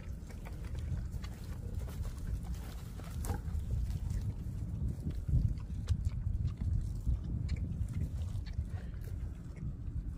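Sows grazing, with grass tearing and chewing in small irregular clicks, and occasional low grunts, over a steady low rumble.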